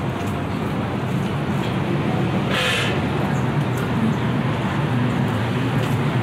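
Steady city street traffic noise from passing cars, with a short hiss about two and a half seconds in.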